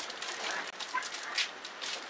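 Crinkling of a foil-lined plastic snack package as it is handled and opened: a run of quick crackles, with a couple of faint short squeaks in the middle.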